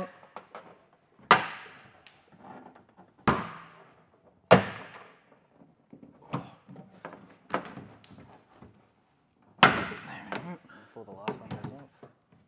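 Plastic pop clips on a Suzuki Jimny's rear door trim panel snapping loose as the panel is pulled off the door. There are four loud, sharp pops a second or more apart, with smaller clicks and knocks of the plastic panel between them.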